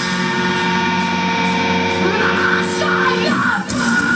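Heavy metal band playing live: a held, ringing chord with a singer's voice yelling and sliding in pitch over it, a very short break just before the end, then the full band comes back in.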